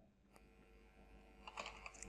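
Faint computer keyboard typing: a single keystroke about a third of a second in, then a short run of keystrokes near the end.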